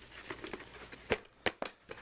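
Blu-ray box-set packaging being handled as a disc set is pulled out: light rustling with a few sharp clicks in the second half.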